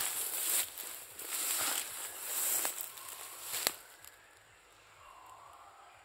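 Footsteps swishing through tall grass, about one stride a second, ending in a sharp click nearly four seconds in.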